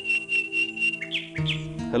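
Birdsong over background music: a steady high pulsing trill, then two quick chirps about a second in, above sustained music notes that deepen near the end.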